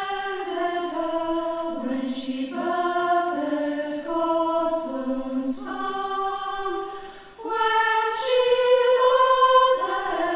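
Mixed choir of women and men singing a carol in sustained chords that change every second or so, with a brief breath about seven seconds in before the voices come back in.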